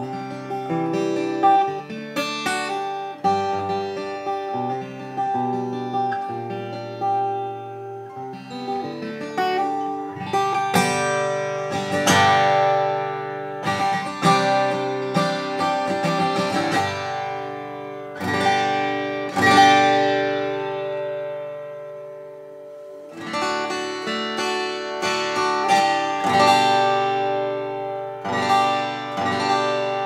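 Taylor 414ce-R grand auditorium acoustic guitar, with a Sitka spruce top and rosewood back and sides, played solo: picked chord notes give way to strummed chords about a third of the way in, one chord is left ringing out about two-thirds through, and then the strumming picks up again. The tone is crisp and very clear, every note distinct.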